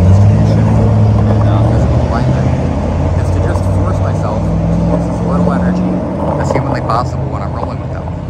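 A motor vehicle's engine running close by: a low, steady hum that steps in pitch, loudest in the first couple of seconds and dropping away after about six seconds.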